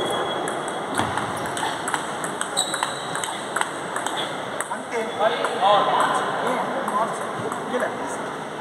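A table tennis rally: the celluloid ball clicks sharply off paddles and table about twice a second, with voices echoing in the hall behind.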